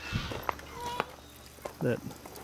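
A few light footsteps and knocks on a gravel floor, spaced about half a second apart.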